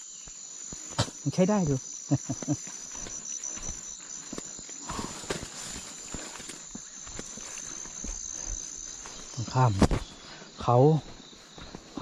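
A steady, high-pitched insect chorus in the forest, with scattered light clicks and rustles.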